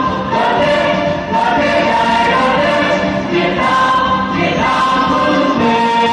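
Music with a choir singing, in held notes that change every second or so.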